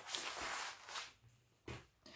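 Clear plastic bag of a cross-stitch kit crinkling as it is handled and opened. The rustle lasts about the first second, then comes again briefly near the end.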